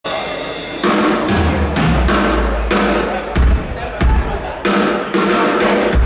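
Live rock band playing loud on stage with electric guitars, bass and drum kit: heavy accented chords and drum hits with deep bass, landing about once a second.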